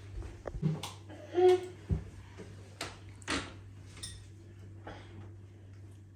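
Scattered light clicks, taps and rustles of hands working the foil and wire cage off a bottle of sparkling wine and wrapping a cloth over its cork. There is a low thump near two seconds, a short hummed 'mm' just before it, and no cork pop.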